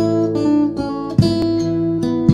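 Background music: an acoustic guitar strumming chords, with a fresh strum a little over a second in.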